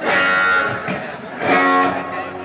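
Live rock and roll band playing over a festival PA, heard from far back in an outdoor crowd: two loud electric guitar chords ring out, one at the start and another about a second and a half in.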